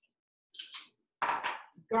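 Kitchen utensils clattering against cookware in two short bursts, the second with a brief ringing tone.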